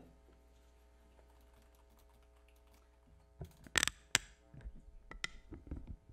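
Faint steady room hum, then from about halfway a run of sharp clicks and knocks, the two loudest close together, followed by several smaller ones.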